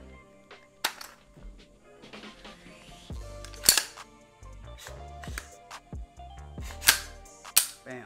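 Diamondback DB15 AR-15 pistol in 5.56 being cleared by hand: the action is worked with sharp metallic clicks and clacks, four standing out, the loudest near four and seven seconds in.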